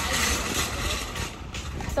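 Road traffic: a vehicle passing close by, its noise fading about a second in.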